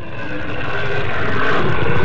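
Dinosaur roar sound effect: a long, rough rumbling roar that grows steadily louder.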